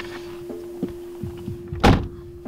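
A car door is pulled shut near the end, one loud thunk, over a steady droning music tone with soft low pulses.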